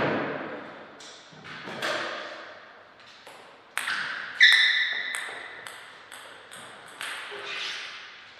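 Table tennis ball striking rackets and the table in a rally: a string of sharp pings, about two a second, each with a short ring. A louder knock comes right at the start.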